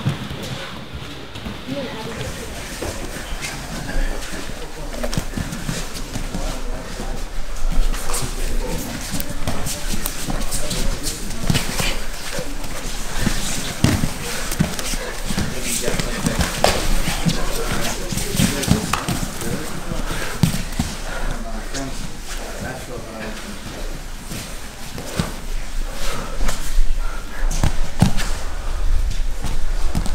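No-gi grappling on foam mats: bodies, knees and hands thudding and slapping on the mat in many short, irregular knocks, with indistinct voices in the background.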